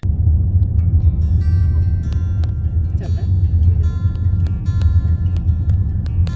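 Steady low road and engine rumble of a car heard from inside the cabin while driving, with background music of held high notes coming in about a second in.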